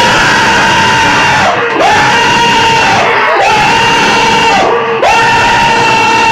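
A voice screaming four long, loud cries at the same high pitch, each held for about a second and a half, with a swoop up into each one, over a dense noisy musical backing.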